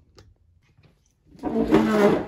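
Handling noise from the camera being picked up and moved: a few faint clicks, then a loud rubbing scrape starting about one and a half seconds in.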